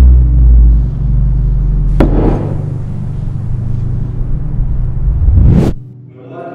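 Film score sound design: a deep, steady low drone, with a sharp hit about two seconds in, building to a rising swell that cuts off suddenly near the end.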